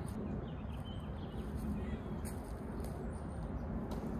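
Woodland outdoor ambience: a steady low rumble with a few faint, brief bird chirps.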